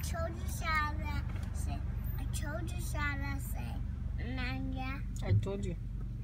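A child's voice singing and vocalizing without clear words, in several short phrases with some held notes, over the steady low hum of the car heard from inside the cabin.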